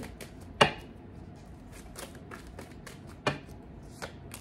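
Tarot cards being shuffled by hand: a run of faint quick card clicks, with two sharp taps, one about half a second in and a second, softer one about three seconds in.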